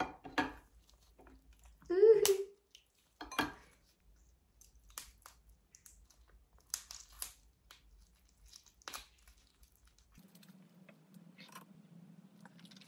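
Gloved hands breaking apart and squeezing a soy-marinated raw crab (ganjang-gejang): a scatter of small cracks, clicks and wet crackles from the shell and meat. There is a short vocal exclamation about two seconds in, and a faint steady low hum starts near the end.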